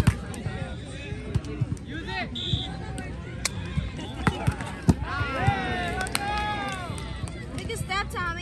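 A volleyball is struck by hands during a rally: about six sharp slaps, the loudest at the start and just before five seconds. Players and onlookers shout and call around them, with a burst of shouting just after five seconds.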